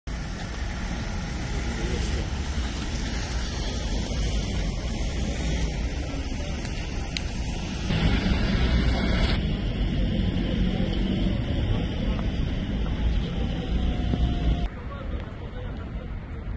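Outdoor street ambience with wind rumbling on a phone microphone and indistinct voices in the background. The sound changes abruptly about halfway through and again near the end, where the footage is cut.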